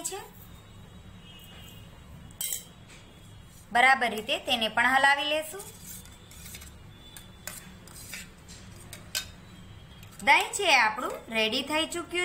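A steel spoon stirring batter in a stainless-steel bowl, clinking and ticking against the bowl in a quick string of light strikes.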